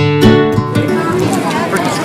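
A few strummed guitar notes of background music start suddenly, then give way within the first second to loud crowd chatter and hubbub.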